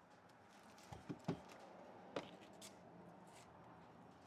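Faint handling sounds: a few soft taps and clicks as a 120-grit sanding disc is fitted by hand onto a palm sander's hook-and-loop pad, three close together about a second in and one more just after two seconds. The sander is not running.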